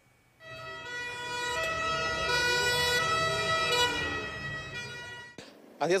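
Emergency vehicle siren sounding over a low vehicle rumble, growing louder and then fading before it cuts off abruptly near the end.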